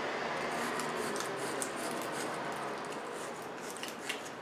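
Steady scraping as corrosion and oxidation are cleaned from the inside of a car battery cable clamp, just before it goes back on the post.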